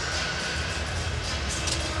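Steady hockey arena background: crowd noise in the rink with music playing faintly under it as linesmen break up a fight.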